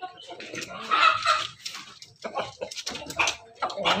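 Pelung–bangkok–ketawa crossbred chickens clucking and calling in a pen, with a louder call about a second in. Near the end a rooster begins to crow.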